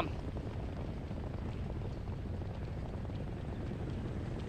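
Steady low rumble of a harness track's mobile starting gate truck driving ahead of the field of pacers toward the start.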